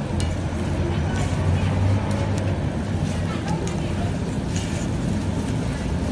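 Steady low hum and background noise with indistinct voices, and a few faint light clicks.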